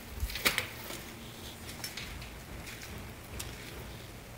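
Two or three light knocks in the first second, then low, steady background noise.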